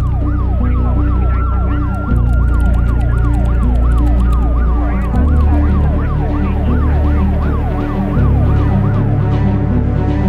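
Emergency-vehicle siren in a fast rising-and-falling yelp, about three cycles a second, laid over dark synth music with deep bass notes that shift every few seconds.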